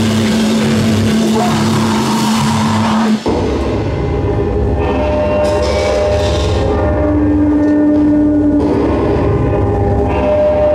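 Electric guitar feedback and effects-pedal drone through the amplifiers, loud. A dense wall of noise over a steady hum cuts off abruptly about three seconds in and gives way to layered, sustained droning tones.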